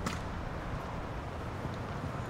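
Steady low outdoor background rumble with no speech, and one faint click right at the start.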